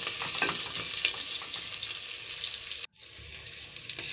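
Sliced onions, nigella seeds and green chillies sizzling in hot mustard oil in an aluminium pot while being stirred with a spoon. The sizzle cuts out for an instant about three seconds in, then returns quieter.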